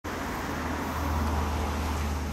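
2003 Kawasaki ZRX1200S inline-four idling steadily through a Tsukigi Racing aftermarket muffler, one just past the legal noise limit.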